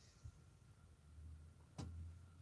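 Near silence with a faint low background rumble, broken by a single sharp click near the end.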